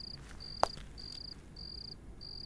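Crickets chirping in a steady rhythm: a short, high, pulsing chirp about every half second. A single sharp click comes a little over half a second in.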